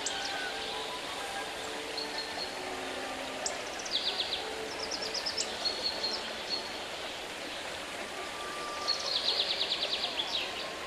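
A small songbird singing: quick trills of short high notes in three runs, the longest near the end, with brief held whistled notes between, over a steady background hiss.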